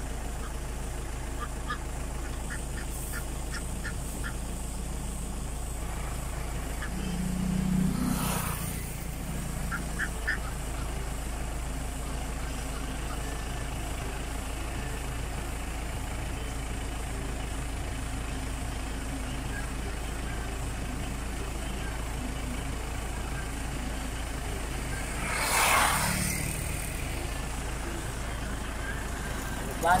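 A flock of domestic ducks quacking now and then over a steady low engine hum. Two vehicles pass, each swelling up and fading, about 8 seconds in and again near 26 seconds.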